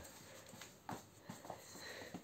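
A few faint, soft taps of a child's slippers stepping on a tiled floor.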